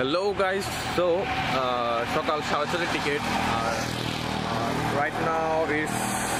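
A man talking over a steady hum of road traffic and vehicle engines.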